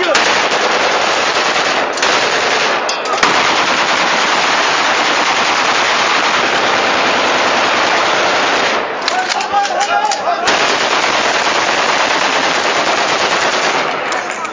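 Celebratory gunfire: a heavy, continuous barrage of rapid shots merging into one dense roar. About nine seconds in it breaks off for a moment into separate cracks and voices, then resumes.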